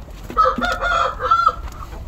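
A rooster crowing once, a drawn-out call of about a second and a half beginning about half a second in.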